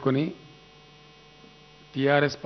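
Steady electrical mains hum in the sound system, a set of constant tones heard in a pause after a man's amplified speech phrase ends just after the start.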